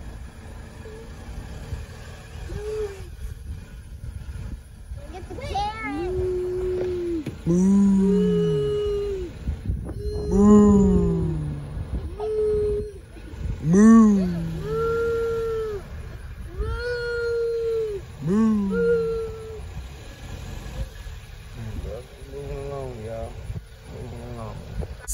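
Two voices, a higher and a lower one, making a string of drawn-out wordless vocal calls about a second each, the lower ones falling in pitch, over the low rumble of a slow-moving car.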